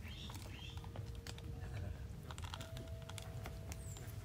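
Faint, scattered light clicks over a low background rumble, with a faint steady hum.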